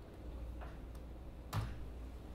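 Quiet room tone with a low steady hum and a couple of light clicks. The sharpest click comes about one and a half seconds in.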